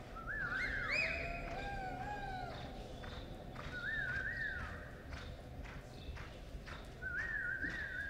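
A horse loping on arena dirt, with faint, regular hoofbeats. Three times a high, wavering whoop rings out, typical of spectators cheering a reining run.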